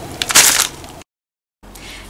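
Paper wrapping crinkling and tearing as hands pull it off a pita wrap, for about a second, then cutting off suddenly.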